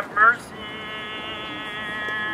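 A voice chanting in a Greek Orthodox service: a short phrase of shifting pitch ends about half a second in, and then one long note is held steady.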